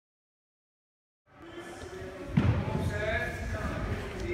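Silence, then the sound of a large sports hall fades in; a little past halfway a single sharp thud rings out with an echo through the hall, followed by voices.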